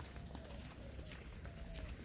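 Faint footsteps through dry grass and soft, muddy ground, with a few soft crunches.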